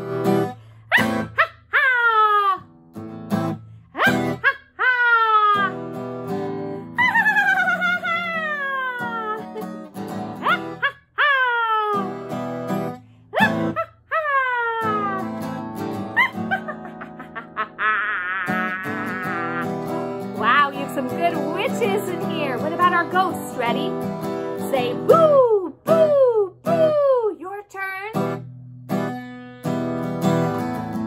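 A woman cackling like a witch, a string of high calls each swooping steeply down in pitch, over a strummed acoustic guitar. Around the middle the voice turns into a fast wavering trill, then the downward swoops return near the end.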